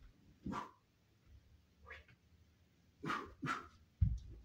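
Four short, sharp vocal bursts: one about half a second in, a weaker one near two seconds, and two close together near the end.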